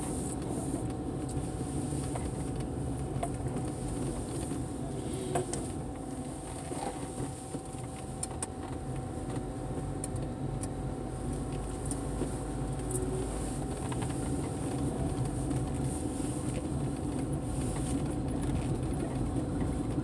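A car driving slowly, heard from inside the cabin: a steady engine and tyre hum with a faint, even whine above it.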